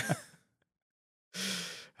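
A man's laugh trails off into a moment of dead silence, then a short breathy sigh of about half a second.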